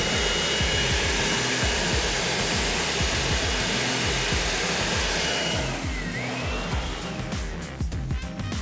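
Upright vacuum cleaner running with a steady whine, dying away about six seconds in, over background music with a steady beat.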